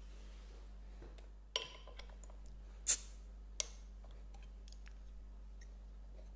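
A beer bottle's crown cap being prised off with an opener: a metallic click with a short ring, then about a second and a half later a short, sharp hiss as the cap lets go, which is the loudest sound, followed by one light click.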